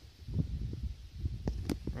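Handling noise and low rumble on a handheld camera's microphone outdoors, with a couple of light clicks near the end.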